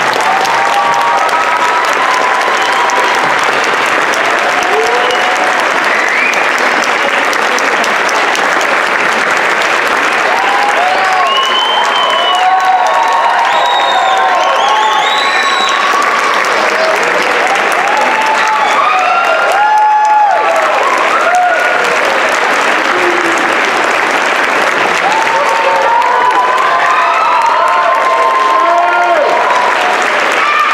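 A large audience applauding loudly and steadily, with scattered whoops and shouted cheers running through the clapping, at the close of a school band concert.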